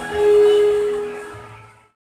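Background music: a held chord rings and fades out to silence near the end.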